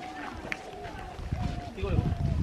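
Background voices of a group of children, with footsteps of children walking on a dirt path that grow louder in the second half.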